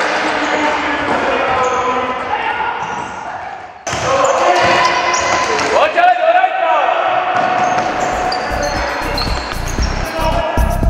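Echoing sports-hall sound of voices and music, with thuds of play. It breaks off abruptly about four seconds in, and a steady low beat comes in near the end.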